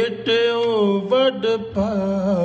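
Sikh kirtan: a man singing a devotional hymn with a wavering, melismatic line over sustained harmonium chords.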